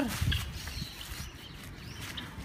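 Footsteps on hard dirt ground: a few soft, low thuds, strongest in the first half second, then fainter.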